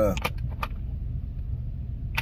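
Steady low rumble of a car idling, heard from inside the cabin, with a couple of faint clicks in the first second.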